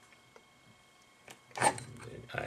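Quiet room with a few faint, short ticks, then a man starts speaking near the end.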